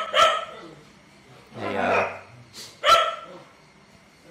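A dog giving a few short, sharp barks: two near the start and another about three seconds in.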